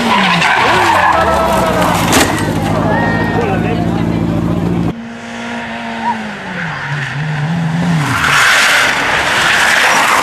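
Rally car engines on a tarmac stage. First a car holds a steady high-revving note as it passes close by. After a sudden cut, a Peugeot 205 rally car's engine note drops and wavers as it brakes into a hairpin, followed by a loud hiss of tyres sliding through the corner.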